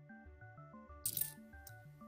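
A handful of 50p coins clinking together in a brief clatter about a second in, with one more clink soon after, over background music with a steady beat.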